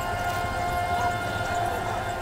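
A siren sounding at a steady held pitch with overtones, fading near the end, over the low rumble of a slow-moving vehicle's engine.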